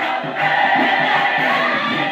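Gospel mass choir singing live, the voices holding long notes together after a brief dip near the start.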